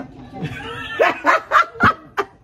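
A woman laughing out loud, breaking into four short, loud bursts of laughter in the second half.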